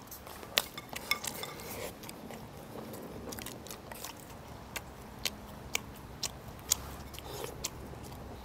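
Eating sounds: chewing, with wooden chopsticks clicking irregularly against ceramic rice bowls in a string of sharp, scattered clicks.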